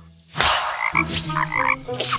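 Cartoon frog croaking, starting about a third of a second in after a brief silence.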